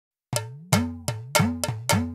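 Percussion opening a folk song: sharp struck hits starting about a third of a second in, roughly three a second, each with a low drum note that bends up and back down in pitch.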